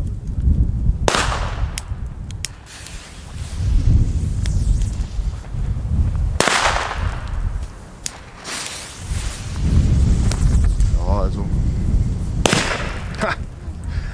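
Three Katan B-Böller firecrackers (old-school 1.5 g black-powder bangers) going off one at a time, about five to six seconds apart, each a sharp bang with an echo trailing after it. Wind buffets the microphone throughout.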